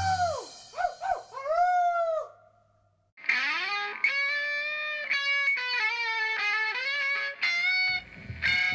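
Home-recorded lo-fi rock: one song ends on a few swooping, bending notes, then about a second of silence, then the next song opens with a slow melody of held notes, electric-guitar-like, with drums coming in at the end.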